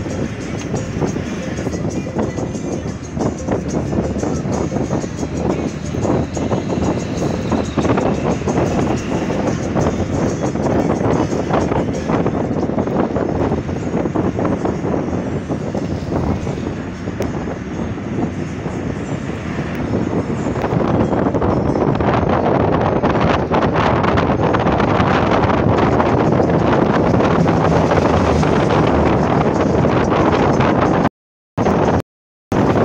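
Road and wind noise from a moving car, with wind buffeting the microphone; it grows louder about two-thirds of the way through.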